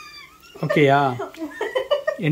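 High-pitched drawn-out vocal cries: one arching up and down in pitch at the start, then a louder call falling in pitch about half a second later.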